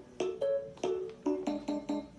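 Plucked-string music: a quick run of single picked notes, about five a second, as the lead-in to a comic song.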